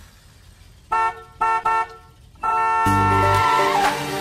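A vehicle horn sound effect opening a song: three short toots, then a long honk that bends down in pitch at its end. The music's bass and drums come in under the long honk.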